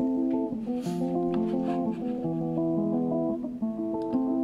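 Music: the opening of a track, with a guitar picking a melody of overlapping notes that has a Spanish, Latin feel.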